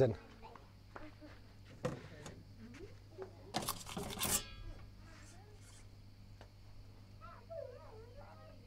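A perforated metal pizza peel knocks once and then scrapes briefly across the stone baking board of an Ooni Karu 12 oven as the pizza is slid off it into the oven.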